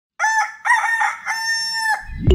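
Rooster crowing: a call in three parts, the last a long held note that cuts off at the end.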